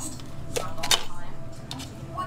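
Red bell pepper being torn apart by hand as its core is pulled out: two crisp snaps of the flesh about a third of a second apart, the second louder.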